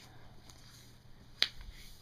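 A single sharp click about one and a half seconds in, with a fainter tick earlier, over quiet background.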